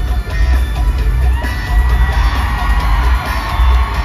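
Live pop music through a stadium sound system, recorded from within the crowd: a heavy bass beat with sustained synth and vocal lines, and the crowd cheering over it.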